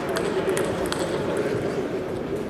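Table tennis balls clicking on tables and bats in a large hall, scattered taps over a steady murmur of voices and hall noise.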